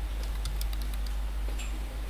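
Computer keyboard being typed on: a few scattered, faint key clicks as a short word is entered. Under them runs a steady low hum.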